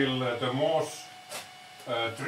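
A man's voice making drawn-out wordless sounds, with a quieter gap in the middle and one light click. A low steady hum cuts off at the very start.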